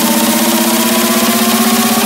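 Electronic dance music build-up: a buzzing synth tone, held and rising slowly in pitch.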